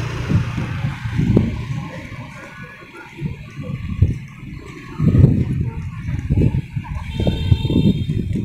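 Irregular low rumbling and buffeting on a handheld microphone carried at walking pace, typical of wind and handling noise. It grows stronger about five seconds in.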